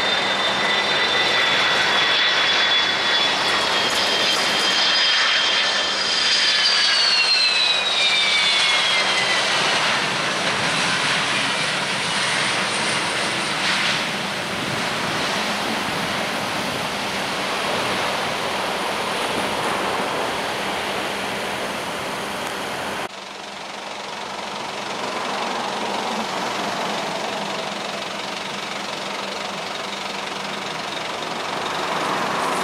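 Boeing 767-200 freighter's jet engines on landing, a loud roar with a high whine that falls in pitch as the airliner passes, then a broad rushing roar as it rolls out on the runway. The sound cuts off suddenly near the end and gives way to the quieter hum of an approaching Beechcraft B300 King Air turboprop.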